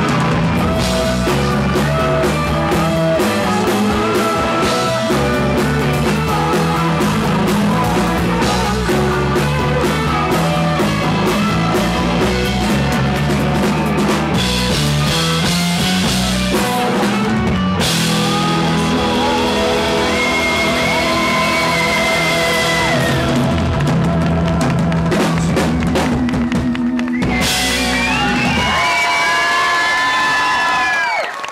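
Live pop-rock band with a male lead singer: drum kit, instruments and vocals playing a song. A little over halfway through, the steady drum beat drops out, leaving sustained chords under the voice, and the song winds down in long held notes near the end.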